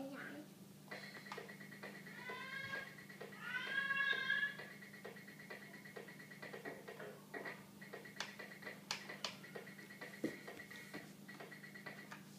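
Cat-shaped toy keyboard playing two electronic meows about two and four seconds in, followed by a run of small clicks as its plastic keys are tapped.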